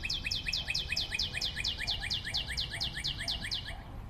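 Cartoon sound effect: a fast, even string of short high chirps, each falling in pitch, about eight a second, that stops shortly before the end. It goes with a block character moving across the screen.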